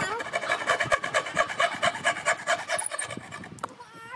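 Hand saw cutting into a pine board in fast, short, even strokes, about four a second. The sawing stops shortly before the end.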